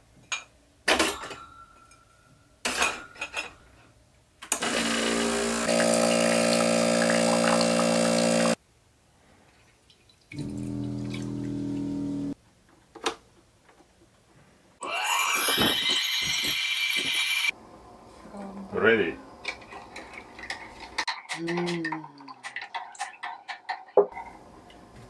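Espresso machine with a built-in grinder running in short spells: a steady mechanical hum of about four seconds, a shorter, quieter hum, then a louder, noisier burst of nearly three seconds. Clicks come before the first hum, and cups clink near the end.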